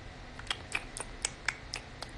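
A steady series of sharp clicks or taps, about four a second, starting about half a second in.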